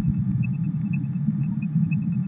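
A steady low hum, with faint rapid high ticks repeating evenly above it.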